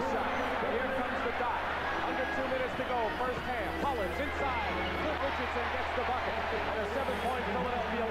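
Arena crowd noise from an old TV broadcast of a basketball game: many voices at once in a steady din, over a constant low hum from the old tape.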